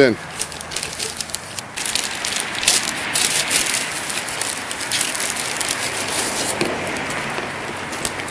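Clear plastic bag crinkling and rustling in irregular crackles as it is handled and opened and the kit's cardboard tubes and centering rings are taken out. The crackling is densest in the first part and thins out over the last few seconds.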